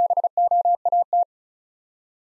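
Morse code tone sent at 35 words per minute, spelling the word BOAT. A single steady tone is keyed in short and long elements in four letter groups and stops a little over a second in.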